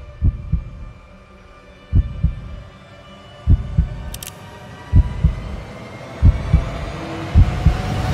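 Trailer sound design: a heartbeat-like pulse of paired low thumps, about every second and a half and coming a little faster, over a steady drone that slowly rises in pitch, building tension.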